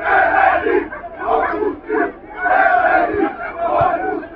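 Football supporters on the terraces chanting and shouting together, loud massed voices in short phrases that rise and fall about once a second.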